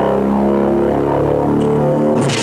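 Electronic music from a sound-system jingle: sustained synthesizer chords stepping from note to note over a held low bass tone.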